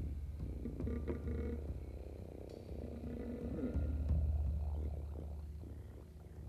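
Electric bass guitar playing low, sustained notes in a sparse passage, swelling again about one second in and about four seconds in.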